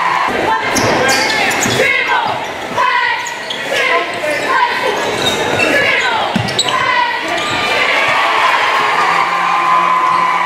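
Basketball game in play on a hardwood gym court: the ball bouncing and dribbling, with shouting voices from players and crowd throughout.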